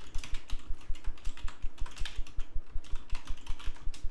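Rapid typing on a computer keyboard: a quick, even run of keystrokes, several a second.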